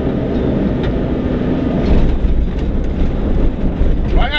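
Rally car driving at speed on a gravel road, heard from inside the cabin: a loud, steady rumble of engine, tyres and stones, with a few short knocks from the chassis.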